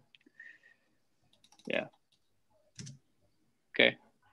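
A quiet pause on a video call with a few faint, sharp clicks. It is broken by brief voice sounds: a spoken "yeah", a short murmur, and a loud, short vocal sound near the end.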